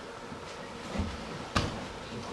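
Two knocks on a stage: a dull low thud about a second in, then a sharper knock half a second later.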